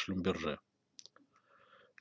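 A lecturer's voice finishes a sentence about half a second in, followed by near silence with a couple of faint short clicks about a second in.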